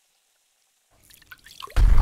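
Cartoon sound effects: a few small liquid drips from a chemistry flask, then a sudden loud explosion near the end as the flask blows up.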